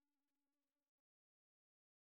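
Near silence: the last inaudible trace of the music's fade-out, then dead digital silence for the second half.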